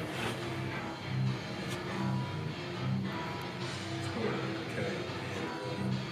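Background music: a repeating pattern of held low notes at a steady, moderate level.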